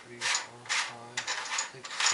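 A folding cardboard checkerboard and its box being handled, making a run of rasping, scraping strokes about two or three a second.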